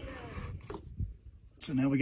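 Soft rubbing and a couple of faint clicks as a wire snake is worked through a rubber tailgate wiring boot, between bits of a man's voice: a short murmur at the start and speech near the end.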